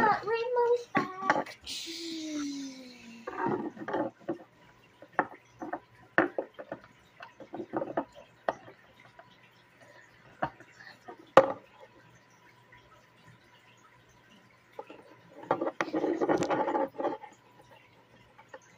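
Plastic Lego bricks clicking together and knocking on a wooden tabletop as they are handled and assembled: a string of separate sharp clicks, the loudest about eleven seconds in. A child's voice makes brief wordless sounds near the start and again near the end.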